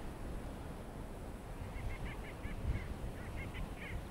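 A flock of sandgrouse calling in flight: a run of faint, short, repeated calls that begins a little before halfway, over a low rumble.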